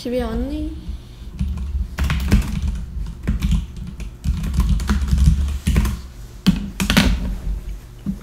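Typing on a computer keyboard: an irregular run of keystrokes, with a couple of louder taps near the end. A brief murmur from a voice comes just before the typing starts.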